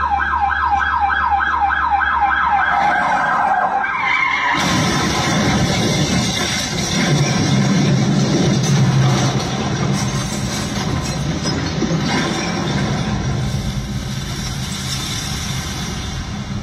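Film soundtrack played in a cinema: a police siren warbling rapidly for about four seconds, then sliding down. A loud stretch of car engine and crashing follows as a car drives through stacked cardboard boxes.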